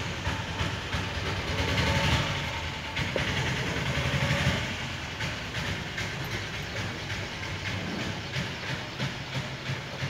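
A small trowel scraping and knocking against a metal plate as wet cement is mixed on it, in a run of repeated short scrapes over a steady hiss.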